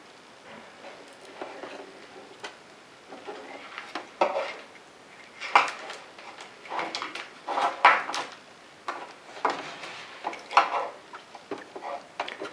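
Gloved hands handling a bundle of plastic ink-supply tubes over a plastic inkjet printer. There are irregular light clicks, knocks and rubs, the sharpest a little past halfway.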